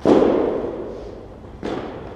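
Two thuds echoing in a large gym hall: a loud one at the start that rings on for about a second, and a softer one near the end.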